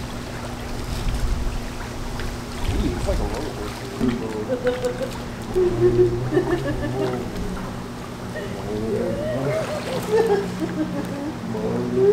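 Voices talking indistinctly, too unclear for the recogniser, over a steady low hum.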